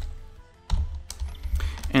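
Typing on a computer keyboard: several separate keystrokes, with soft background music underneath.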